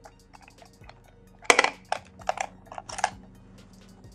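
Handling noise from an eyeshadow palette and makeup brush: small clicks and taps, with two louder short scrapes, one about a second and a half in and another near three seconds.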